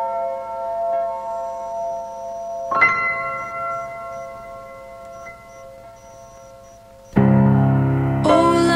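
Background music: a bell-like chime note rings and slowly fades, a second strike comes about three seconds in and dies away, then a fuller, louder passage with deep bass notes begins near the end.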